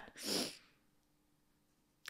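A single short breathy puff of air from a person, lasting under half a second near the start.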